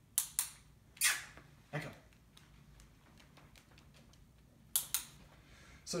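Dog-training clicker: a quick double click just after the start and another near the end, with a sharp click about a second in, each marking the puppy touching the training flag with her nose.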